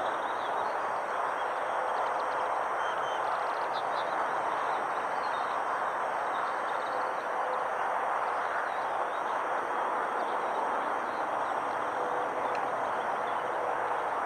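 Steady hum of distant traffic, with faint bird calls a few seconds in.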